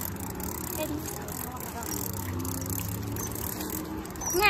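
A steady low engine hum with faint voices under it.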